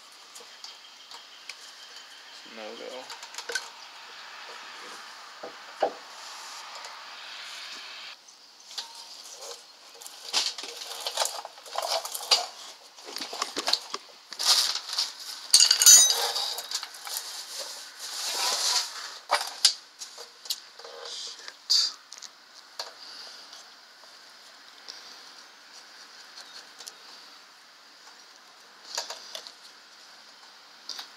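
Brake pads and their metal retainer clips clinking and scraping against the caliper bracket as the new pads are test-fitted, dry before greasing. The clinks come thickest in the middle, with a few single clicks later.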